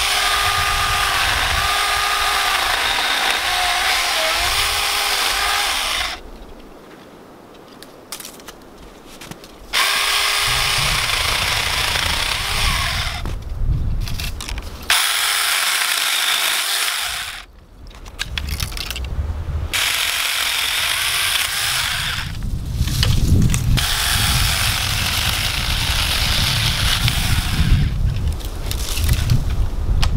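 Saker mini 4-inch cordless electric chainsaw running and cutting a tree branch. It goes in four runs with short pauses, its motor whine dipping in pitch as the chain bites into the wood. Low wind rumble on the microphone in the second half.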